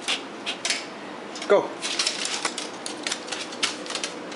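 Shih Tzu's claws clicking and skittering on a hardwood floor in quick, irregular taps as the dog jumps and scrambles.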